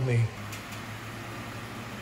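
A Jeep's engine running at low speed, a steady low hum.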